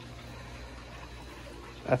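Steady low hum and faint hiss of outdoor background noise, with a man's voice starting just before the end.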